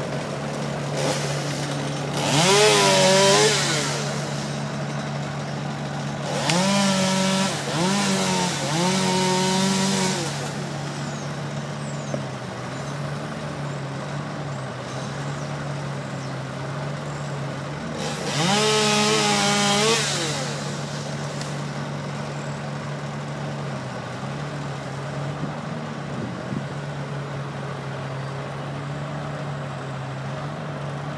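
Chainsaw revved in several short bursts of a second or two, its pitch rising and falling each time, over a steady engine drone.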